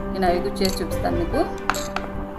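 Steel spoon clinking against a small glass bowl while a dark liquid is stirred, with one sharp clink near the end, over background music.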